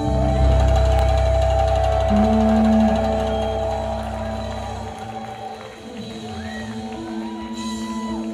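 Live rock band music: a chord held over strong bass, the bass dropping out about five seconds in while higher notes ring on with a few sliding notes.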